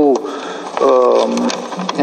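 A man speaking Romanian, drawing out one vowel for about half a second about a second in.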